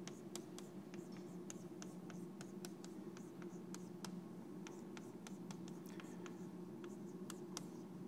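Chalk writing on a blackboard: faint, irregular taps and short scratches, several a second, as a formula is written out, over a steady low hum.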